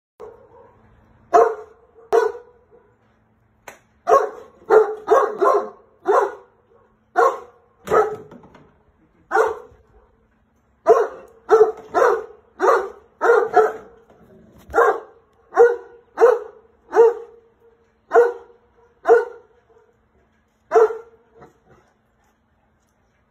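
Alabai (Central Asian Shepherd) guard dog barking repeatedly from its kennel: about two dozen single barks in quick runs, with a couple of short pauses.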